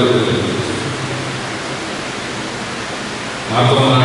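A man's amplified speech trails off, then a steady, even hiss fills a pause of about three seconds before his voice comes back near the end.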